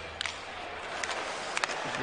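Ice hockey arena sound during live play: a steady crowd murmur with a few sharp clacks of sticks and puck on the ice, once early and again about a second and a second and a half in.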